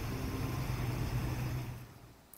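Motorbike engine running with a steady low hum amid street traffic noise, fading out near the end.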